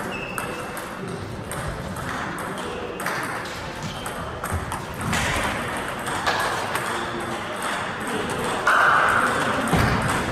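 Table tennis ball clicking off bats and the table during a rally, with further ball clicks from play on neighbouring tables in the hall.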